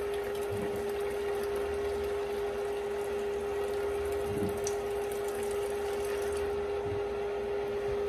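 Corn-cob broth running in a steady stream from the spigot of a Ball FreshTech electric canner through a fine-mesh strainer into a measuring cup, over a steady hum.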